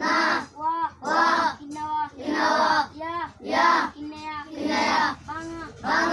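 Children's voices chanting in a sing-song rhythm, about two syllables a second, the way a class recites aloud.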